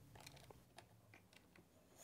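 Near silence, with a few faint, scattered clicks and ticks from hands handling an unplugged plunge router and its router base.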